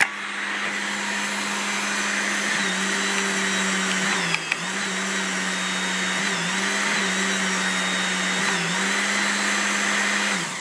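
Hydraulic torque pump running steadily, powering a hydraulic torque wrench that is tightening a nut on a blowout preventer spool flange. Its hum dips briefly in pitch about four times, and there is a click about four seconds in.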